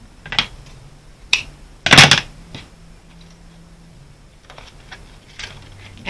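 Paper and twine being handled on a cutting mat: a few short rustles and taps, the loudest about two seconds in, as a sheet of scrapbook paper is folded over and pressed flat.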